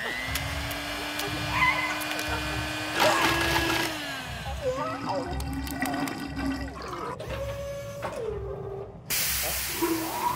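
Cartoon sound effects: a character's wordless squawks and vocal noises with gliding pitches, over a low pulse repeating about once a second, with scattered clicks. A loud rush of noise comes in near the end.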